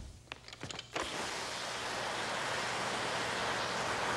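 Toy water blasters spraying water: a few light clicks, then about a second in a steady spraying hiss begins.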